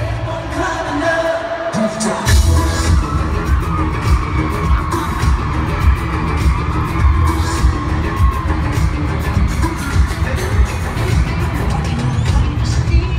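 Live pop concert music played loud through an arena sound system: a male lead singer over a band with heavy bass. The bass drops out briefly and comes back with a sharp hit about two seconds in.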